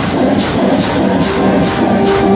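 A male reciter chanting a fast latmiyya over a fast, even beat of about four strikes a second, holding a long note from a little past halfway.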